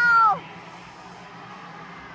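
A spectator's high-pitched held cheer that drops in pitch and cuts off about a third of a second in. After it comes a steady, much fainter arena crowd background.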